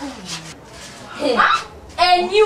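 Brief wordless human vocal sounds: a short low falling groan at the start, then a louder cry that rises and falls about a second and a half in.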